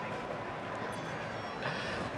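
Steady, even background hiss of room tone, with no distinct sound event.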